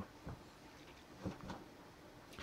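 Near silence: quiet room tone, with a couple of faint soft bumps a little past the middle.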